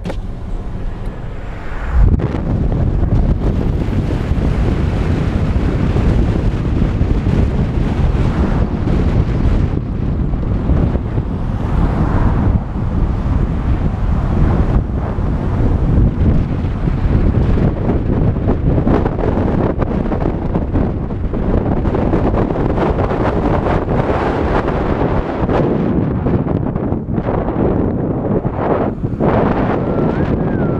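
Wind buffeting the microphone of a camera held outside a moving car, a loud, uneven rumble over the car's road noise. It starts suddenly about two seconds in.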